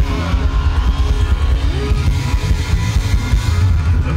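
Live band playing loud music with guitar and drums, heavy in the bass.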